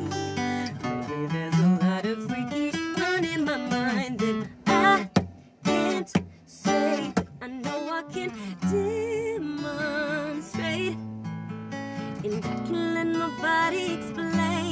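Live acoustic song: a Taylor acoustic guitar strummed and picked, with a woman singing over it. Around the middle the guitar plays a few sharp strokes with brief gaps between them.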